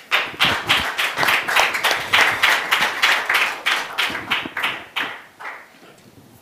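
Hand clapping in applause, an even beat of about three claps a second that dies away about five and a half seconds in.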